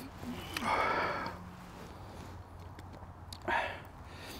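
A man breathes out hard with a wordless, voiced exhale after knocking back a shot, then sniffs briefly near the end.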